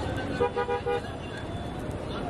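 A vehicle horn tooting three short times in quick succession, about half a second in, over a steady hum of street noise.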